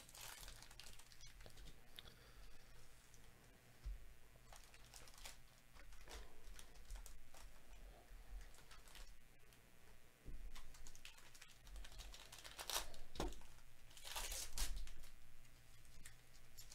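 A trading-card pack's plastic wrapper being torn open and crinkled by gloved hands, with the cards inside handled. It comes as quiet, scattered crackles and rips, the loudest a little past halfway and again near the end.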